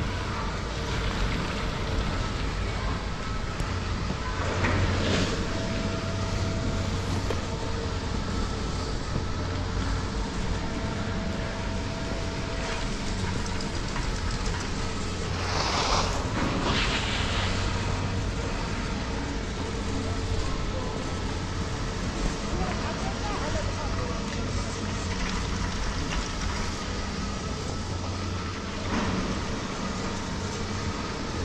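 Detachable gondola with Poma Agamatic grips running at its lower terminal: a steady low machinery hum with faint steady tones. Cabins and their grips on the haul rope clatter briefly about five seconds in, loudest around the middle as a cabin passes out of the station, and again near the end.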